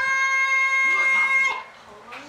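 A cartoon rooster's crow from the edited clip, one long steady-pitched note that cuts off suddenly about a second and a half in.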